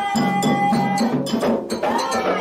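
Candomblé ritual music: hand drums beating a steady rhythm with clicking percussion, under sung chant in which one voice holds a long note for about the first second. The music dips briefly about three-quarters of the way through.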